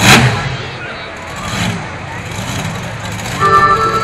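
A monster truck engine revs in a loud, short burst, with a second smaller rev about a second and a half later. Music over the arena loudspeakers starts near the end.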